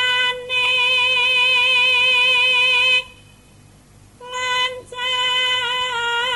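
Javanese female solo voice (sindhen) holding a long sung note with light vibrato, breaking off after about three seconds and then taking up the same note again. No gamelan instruments are heard with it.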